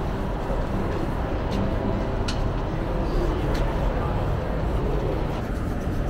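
Open city-square ambience: a steady low rumble of traffic with faint voices, and a few light clicks a second or two in.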